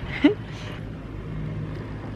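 Open chairlift running, heard from the seat: a steady low hum under a wash of air noise, with a short vocal sound just after the start.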